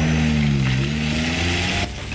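A Porsche sports car's engine running as the car drives past. Its note dips slightly about halfway through, rises again, and cuts off sharply just before the end.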